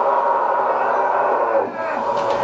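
A live rock band's song cuts off right at the start, its drums and bass dropping out. What is left is crowd cheering and shouting in a small room over the lingering ring of the amplifiers, which dips near the end.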